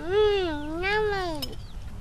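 A young girl's drawn-out, closed-mouth "mmm" of approval while chewing food, one hummed tone that rises and falls twice over about a second and a half.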